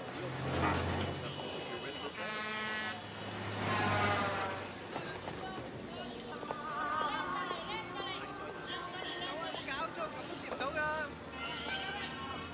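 Busy city street sound: passers-by talking indistinctly over traffic, with a steady held tone about two seconds in lasting under a second.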